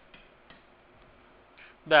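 A few faint, short clicks from a pen on a writing tablet as an arrow is drawn, over a low steady hiss.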